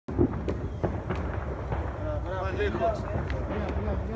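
Faint murmured voices over a steady low rumble, with scattered sharp clicks.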